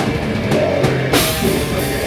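A rock band playing loud with electric guitar and drum kit, heard as a live recording. A cymbal crash comes in a little over a second in.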